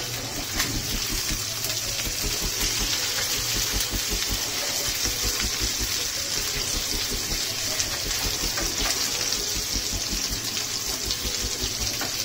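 Goat chops sizzling in hot oil in a frying pan, a steady hiss, with a few faint clicks as a spatula turns them.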